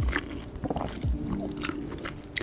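Close-miked wet chewing and mouth sounds of a person eating soft, saucy pasta with melted cheese: many small sticky clicks and smacks with a few soft low thumps.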